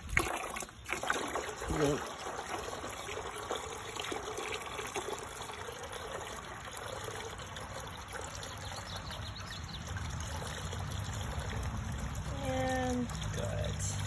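A steady stream of water pouring into the black plastic reservoir of a mosquito trap, trickling and splashing as it fills. It grows a little louder and fuller near the end as the basin fills up.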